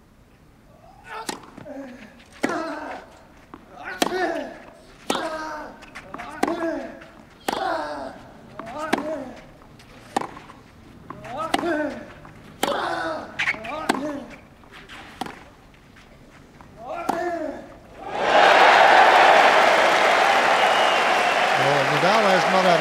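Tennis rally on clay: about a dozen racket strikes on the ball, roughly one every 1.2 s, each with a player's grunt. Near the end the point ends and the crowd breaks into loud applause and cheering.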